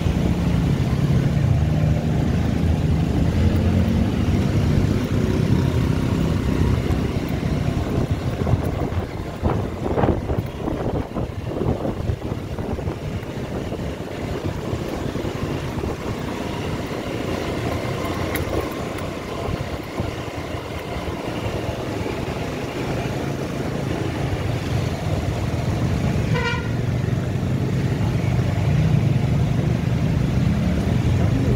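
Motorcycle engine running steadily while riding through city traffic, louder at the start and near the end. There is a cluster of knocks and rattles about ten seconds in, and a vehicle horn gives a quick burst of beeps a few seconds before the end.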